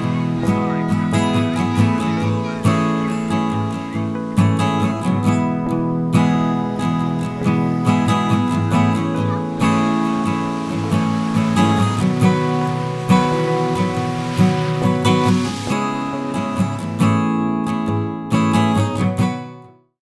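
Background music led by acoustic guitar, fading out just before the end.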